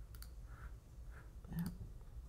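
Computer mouse button clicks: a quick pair near the start and another pair about a second and a half in.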